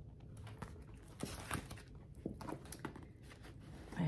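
Faint, scattered rustling and crinkling of a clear plastic kit bag and fabric pieces being handled, a few soft clicks spread through it.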